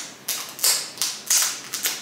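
Command picture-hanging strips being pressed together and handled: a quick series of about four short, scratchy crackles.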